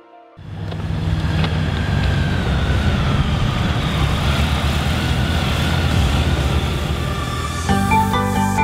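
Two motorcycles riding up, their engines running steadily after a sudden start about half a second in. Music with clear notes begins near the end.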